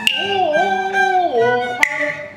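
Cantonese opera music in rehearsal: a long held note that bends and wavers in pitch, sung or played, then drops lower. A single sharp percussion strike comes near the end.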